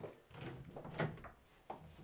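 White interior panel door being opened by hand: a few short clicks of the handle and latch, the sharpest about halfway through, with the faint sound of the door moving between them.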